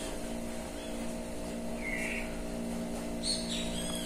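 A steady, machine-like background hum made of several even tones, with a short bird chirp about halfway through and a few higher chirps near the end.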